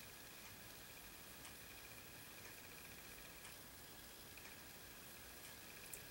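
Near silence: room tone with a faint steady high hum and a few very faint ticks.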